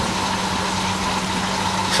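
Steady hum of aquarium pumps and filtration running, a constant low tone under an even hiss.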